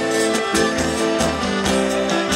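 Live band playing an instrumental passage: bowed fiddles and strummed acoustic guitar over a drum kit keeping a steady beat.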